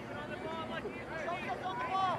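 Many overlapping voices of players and spectators calling out and shouting at once, fairly high-pitched, with no single voice clear.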